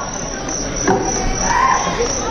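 Steady high cricket chirring from the venue's sound system as part of the song's intro soundscape, with a couple of sliding musical tones on top.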